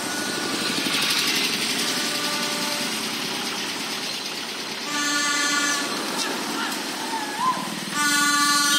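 Road traffic: a motorcycle engine running as it pulls away in the first few seconds, then passing vehicle noise, with a brief steady tone about five seconds in.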